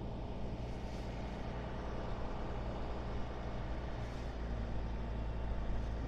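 Heavy diesel construction machinery running steadily, a low even engine rumble.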